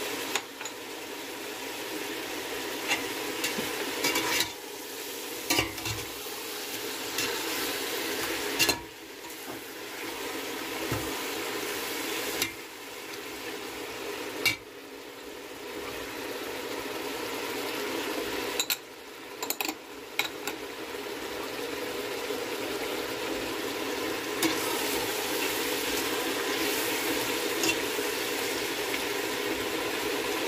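Chicken pieces sizzling as they fry in oil in a stainless steel pot. A metal spoon stirs and turns them, scraping and knocking against the pot now and then.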